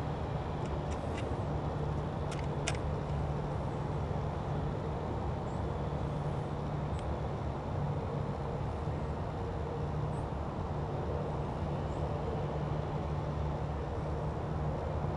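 Steady low rumble of distant road traffic, with a few faint sharp clicks in the first three seconds.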